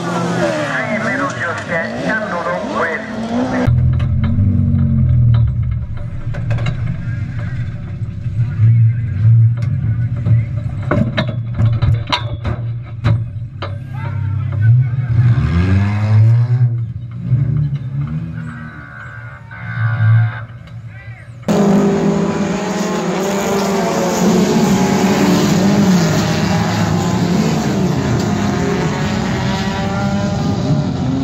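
Race car engines running, broken up by a run of sharp knocks and bangs in the middle from inside a crashing car. Near the end comes a steady din of several engines on a dirt oval.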